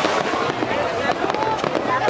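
Aerial firework shells bursting, with many short sharp pops and crackles, mixed with the voices of people talking.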